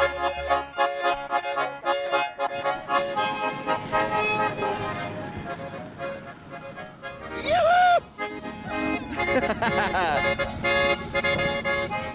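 Schwyzerörgeli, Swiss diatonic button accordions, playing a folk tune together in steady chords. About two-thirds of the way in, a loud brief call from a voice cuts across the playing.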